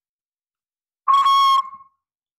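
Small 3D-printed whistle in a button whirligig, blown through its slot: one short, steady, high whistle starting about halfway in and fading away near the end.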